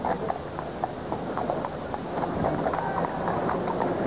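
Several racehorses walking, their hooves clip-clopping in an irregular run of knocks over a steady background of crowd noise.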